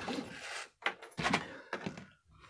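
Handling noise as first-aid kit items are laid on a wooden workbench, with a few light knocks and taps: one about a second in and a couple more near the end.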